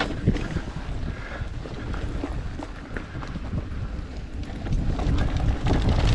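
Mountain bike descending a dirt trail at speed: wind on the microphone over the rumble of knobby tyres on dirt, with frequent knocks and rattles from bumps. It gets louder about five seconds in.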